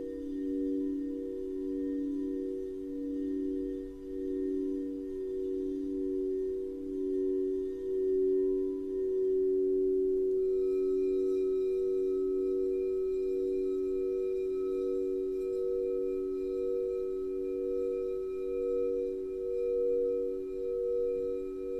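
Several crystal singing bowls ringing together in steady, slowly pulsing tones, kept sounding by a wand rubbed around the rim. About halfway a different bowl comes in, changing the higher overtones, and the sound swells a little.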